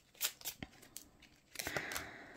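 Tarot cards handled by hand: a couple of short card clicks as the deck is shuffled, then a longer sliding rustle of cards near the end as cards are drawn and laid down on the table.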